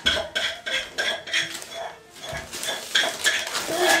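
Gift wrapping paper rustling and crinkling in quick, irregular bursts as a present is pulled open by hand.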